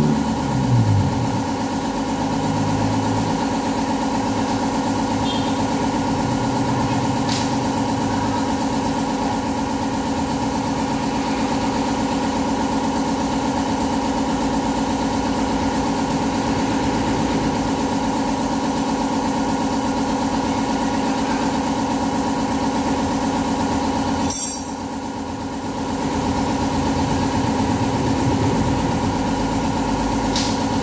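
A motor running with a steady, unchanging hum. A sharp click comes about 24 seconds in, and the sound goes quieter for a second or two before the hum returns at full level.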